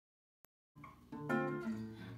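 Silence with a faint click, then an acoustic guitar starts playing plucked notes about three-quarters of a second in.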